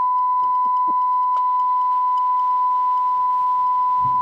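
A single steady electronic beep at one pitch, held unbroken for about four seconds and then cut off sharply, with a faint click about a second and a half in.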